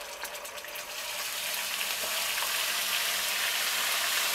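Ginger-garlic paste sizzling in hot oil, the sizzle building over the first second and then holding steady as it fries.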